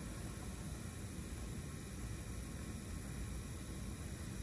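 Steady background hiss and low rumble with no distinct events: room tone in a large hall.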